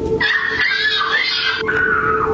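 A woman's long, high-pitched scream that starts about a quarter second in and slowly falls in pitch.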